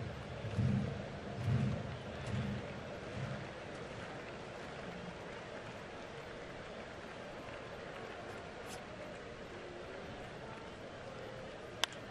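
Ballpark crowd ambience: a steady murmur of stadium noise, with a few low, evenly spaced pulses in the first few seconds and a single sharp pop near the end.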